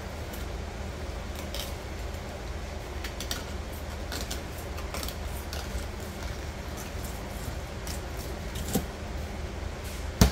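Fillet knife cutting a northern pike along the belly and rib cage: an irregular scatter of small clicks and scrapes as the blade works through flesh and bone against the table, with one sharper click near the end. A steady low hum runs underneath.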